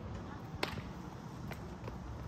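A sharp click about half a second in and a fainter one near the end, over a steady low outdoor rumble.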